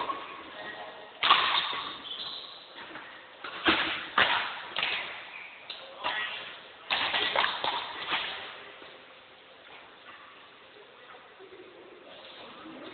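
Badminton rackets striking a shuttlecock in a rally: a series of sharp hits that echo in a large hall, dying away after about eight seconds.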